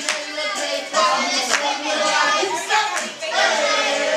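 A few sharp, irregular hand claps among a group of voices at a party.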